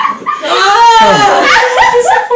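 Excited, high-pitched voices of a small group of people squealing and exclaiming, without clear words, pitch rising and falling.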